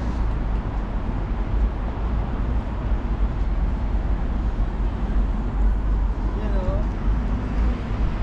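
City street traffic noise: a steady rumble of road traffic with a heavy, deep rumble underneath, heard while walking along the roadside.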